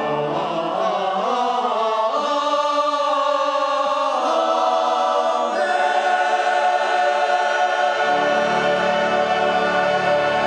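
Church choir singing slow, sustained chords, with low accompanying notes rejoining about eight seconds in.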